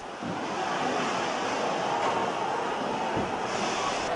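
A dense, steady rushing noise with no distinct separate events, growing a little hissier near the end.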